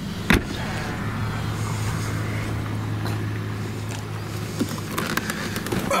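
The Volkswagen Eos's trunk lid shuts with one sharp thud. The car's turbocharged four-cylinder engine then idles with a steady low hum.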